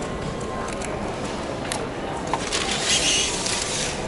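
Food-court ambience: a steady wash of room noise with indistinct background chatter and a few light clicks, and a brief hissing rustle about two and a half seconds in.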